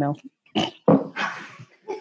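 A person laughing over a video call: a couple of short voiced laugh sounds, then a breathy exhale that fades.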